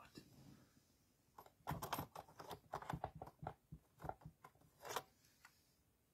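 Plastic clicks and clatter of a cassette tape and its clear plastic case being handled at an open cassette recorder, a quick irregular run of knocks from about a second and a half in until about five seconds in.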